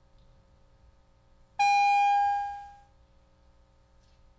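A single bright chime tone starts suddenly about one and a half seconds in, holds for about half a second, then fades out over the next second, over a faint steady hum.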